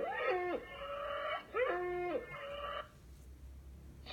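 Bull bellowing twice: two long calls, each rising in pitch, holding level, then dropping away.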